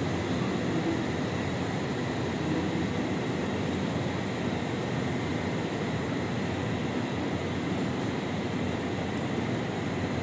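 Machinery running: a steady, even rumble with a faint high whine on top.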